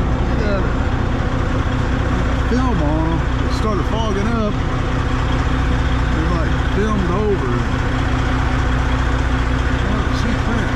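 Semi truck's diesel engine idling steadily. A voice is heard indistinctly a few seconds in and again about two-thirds of the way through.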